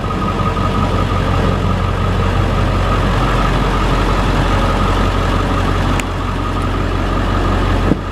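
Ford 7.3 Power Stroke V8 turbo-diesel idling steadily with a continuous low rumble and clatter. A single click comes about six seconds in.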